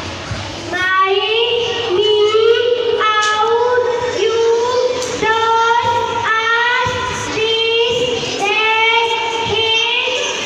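A young child's high voice singing in a singsong, drawn-out notes that each glide up at the start, about one note a second, beginning about a second in.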